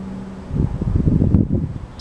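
Wind buffeting the microphone: an irregular low rumble that starts about half a second in, after a steady low hum cuts off.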